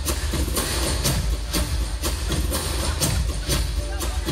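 Live band playing an instrumental passage over a loud sound system with heavy bass, with a steady drum beat about twice a second and no singing.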